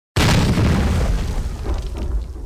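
A deep cinematic boom sound effect for an animated logo intro: it hits suddenly just after the start and slowly dies away.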